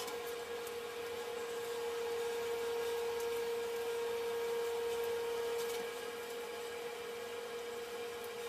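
A steady hum at one pitch over a faint hiss, a little louder through the middle and easing back about six seconds in.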